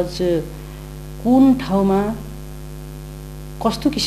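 Steady low electrical mains hum in the recording, under a man talking in short phrases with pauses between them.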